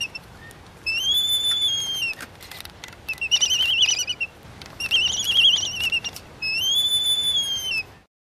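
A series of four high whistled animal calls, each about a second long with short gaps between them. A level whistle that rises at the start and drops at the end comes first, then two warbling, trilled whistles, then another level whistle.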